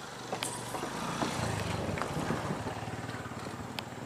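A small motorcycle engine running as the bike rides across a wooden suspension bridge, its low hum swelling in the middle and easing off, with a few sharp knocks along the way.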